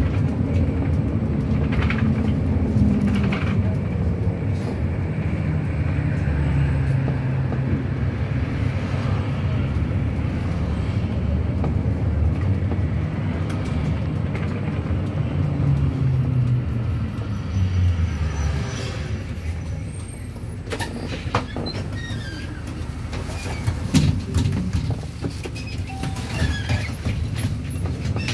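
City bus engine and drivetrain running, heard from inside the cabin, with the pitch rising and falling as the bus changes speed. Past the middle it goes quieter as the bus slows, with scattered rattles and clicks as it draws up to a stop.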